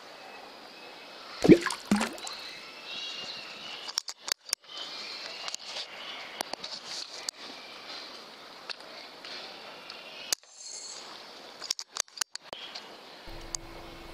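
An air rifle firing with a sharp report about a second and a half in, the loudest sound, with a second, smaller sharp sound just after. Several fainter clicks follow later over a faint steady hiss.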